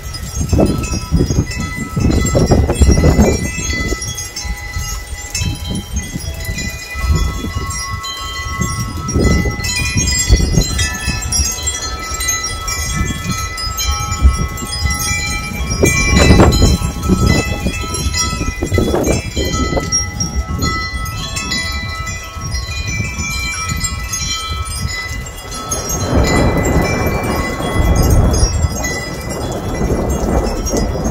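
Wind chimes ringing continuously in gusty storm wind, many overlapping tones sounding at once, over repeated low rumbling surges. A louder rushing noise swells near the end.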